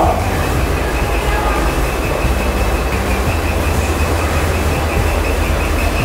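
A steady low hum with a thin, faintly pulsing high whine over a constant background hiss.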